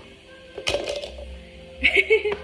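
A frozen strawberry dropped into a plastic blender cup, a short clatter of a few quick knocks about half a second in. A voice starts just before the end.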